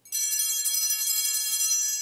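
Altar bells rung at the elevation of the chalice after the consecration at Mass. A cluster of small bells is shaken in a bright, jangling peal that starts suddenly and begins to fade near the end.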